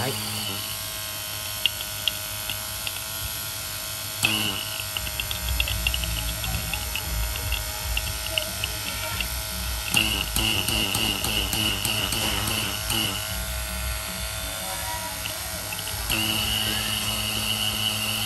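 Battery-powered TASCO rotary vacuum pump running steadily, a motor hum with a high whine, while it pulls the connected gauge down to deep vacuum. Its tone shifts a few times as it runs.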